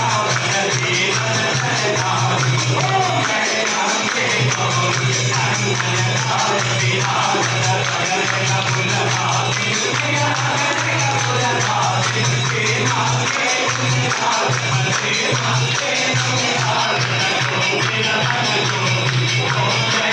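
Devotional aarti music: a hymn sung with a steady beat of jingling metal percussion, going on without a break.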